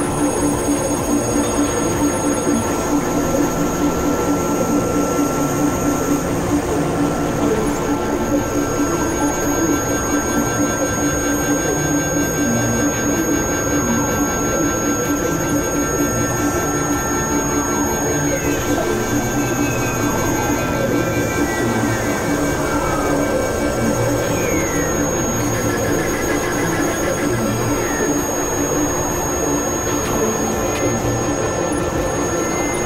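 Dense experimental electronic noise-drone music from synthesizers: a steady, unbroken noisy texture with several held tones, and a few falling pitch glides in the second half.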